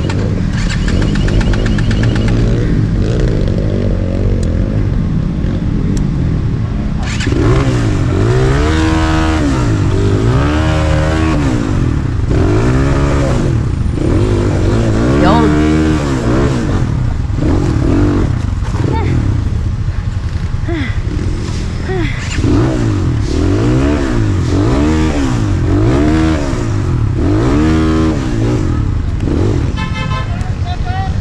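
Enduro dirt bike engine running steadily at first, then revved up and down over and over, about once a second, from several seconds in as the bike is worked over rocks.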